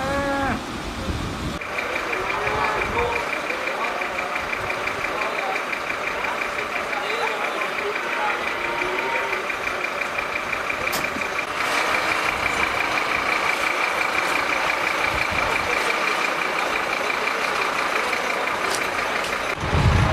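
A steady, high-pitched electronic warning tone, rapidly pulsing, that sounds on without a break and gets louder about halfway through.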